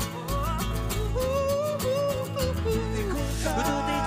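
Live band playing a song: a male voice singing a melody over acoustic guitar strumming, electric bass and keyboard.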